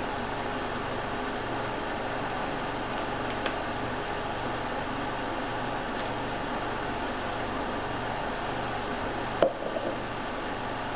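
A steady background hum and hiss, with a faint low throb pulsing under it. A small click comes about three and a half seconds in, and a light knock near the end is followed by a couple of smaller taps.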